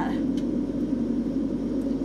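A steady low drone, an even hum with a hiss over it, with no breaks or strokes in it.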